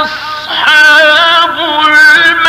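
A man's voice in melodic Qur'an recitation, holding long, ornamented notes with a wavering pitch. Near the start the voice briefly drops away, then comes back strong on a new held note.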